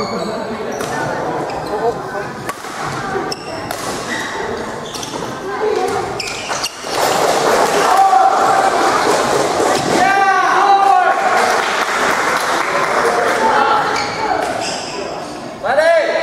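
Badminton rally on an indoor court: sharp clicks of rackets striking the shuttlecock and squeaks of shoes on the hall floor, over steady crowd chatter in a reverberant hall.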